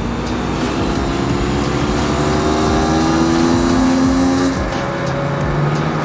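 Kawasaki KX100 two-stroke single-cylinder dirt bike engine running at steady low revs, its pitch creeping slowly up, then dropping to a lower idle about four and a half seconds in.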